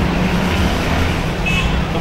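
Road traffic: vehicle engines running as a steady low hum and rumble, with a brief high tone about a second and a half in.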